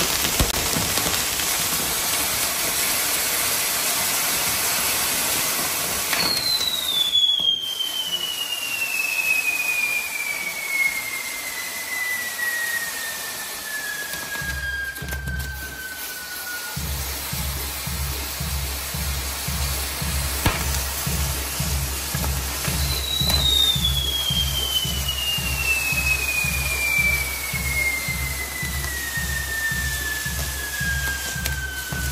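A burning fireworks castillo with a spinning pinwheel: a steady hissing, crackling rush of sparks. Twice, a long whistle slowly falls in pitch over about ten seconds, the first about six seconds in and the second near the end. A low, steady pulse of band music runs under it through the second half.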